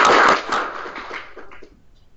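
Audience applause after a talk, a dense patter of clapping that drops off sharply about a third of a second in and dies away over the following second.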